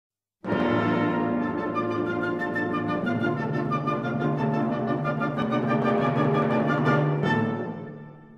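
Instrumental background music that starts about half a second in and fades out near the end.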